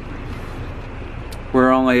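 Steady hiss of rain and wind from a hurricane's outer bands.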